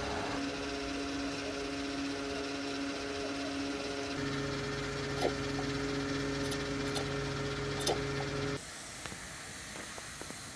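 Fuel dispenser pump humming steadily while diesel flows into the tank, with a few faint clicks. The hum drops away about eight and a half seconds in, leaving a quieter background.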